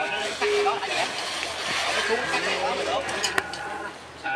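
Indistinct voices of people talking at a distance, with a single sharp click a little after three seconds in.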